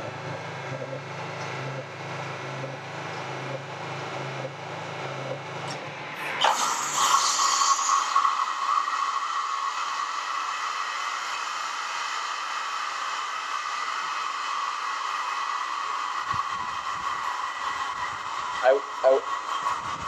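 Electric irrigation pump motor starting up about six seconds in with a sudden burst of noise, then running steadily with a whine. Before it starts, a low pulsing hum.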